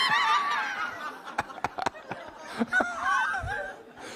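High-pitched laughter in two bursts, one at the start and another about three seconds in, with a few light clicks between.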